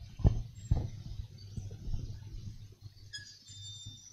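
Two soft thumps in the first second, followed by low, irregular rustling and faint clicks, like handling noise picked up by a microphone.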